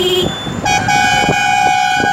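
Vehicle horns in road traffic: a short lower toot right at the start, then a steady higher-pitched horn held for about a second and a half, over road and engine rumble.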